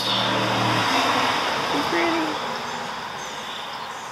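Road traffic: a passing vehicle's rush of tyre and engine noise, loudest in the first two seconds and then fading away.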